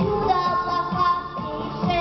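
A girl singing a song into a handheld microphone over backing music, her voice carried by the stage sound system.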